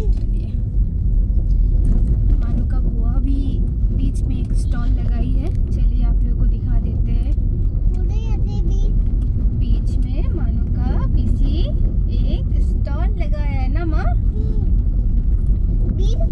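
Steady low rumble of a car driving on a road, heard from inside the cabin. A high, wavering voice sounds briefly a few times over it, in the second half.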